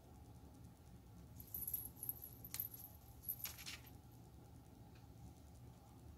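Faint, light rustling and a few small clicks and jingles from hands handling small craft pieces, such as the bow, lace and glue bottle, clustered over about two seconds in the middle.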